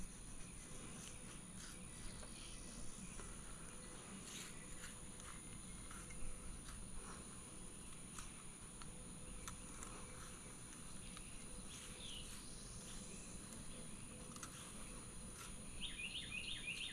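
Faint outdoor background with scattered small chirps and occasional light clicks.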